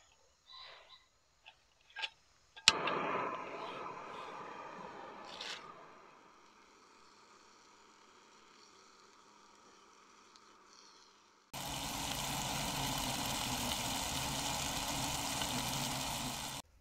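Chicken and onions frying in a small pan on a portable gas-canister camping stove: a few light handling clicks, then a sharp click a little under three seconds in and a loud hiss that fades over about three seconds. From about eleven seconds in a steady loud sizzling hiss of the burner and frying food runs on.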